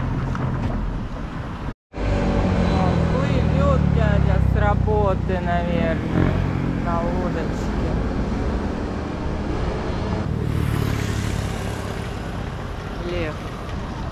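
People talking over the steady low hum of a running motor engine, with a brief cut to silence about two seconds in.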